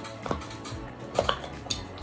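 A few light clicks and knocks of small makeup containers being handled and set down while searching for face powder.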